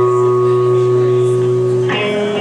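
Electric guitar holding one chord that rings steadily at the opening of a song, with the next chord struck near the end.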